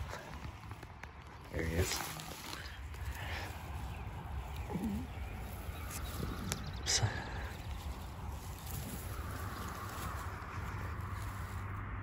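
Dry grass rustling and crackling as a hand reaches into a woodchuck burrow and drags out the carcass, over a low steady rumble.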